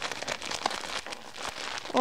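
Plastic mailing bag crinkling and crackling in irregular bursts as hands grip and pull at it, trying to tear it open.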